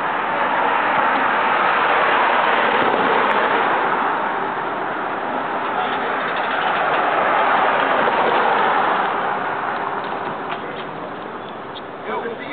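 Street noise of passing vehicles: a loud rushing that swells twice, about two seconds in and again about seven seconds in, and dies down near the end.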